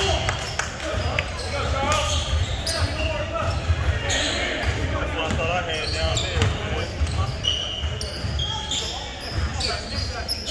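Echoing gym ambience: indistinct voices of players and onlookers, with a basketball bouncing on the hardwood court and brief high-pitched sneaker squeaks.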